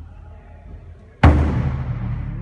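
A large taiko drum struck once with sticks about a second in, a deep boom that rings on in the hall's echo; the fading tail of an earlier stroke is heard before it.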